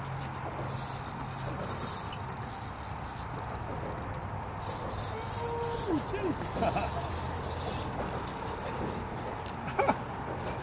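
Steady low engine hum with wind and open-air noise, with no distinct event standing out.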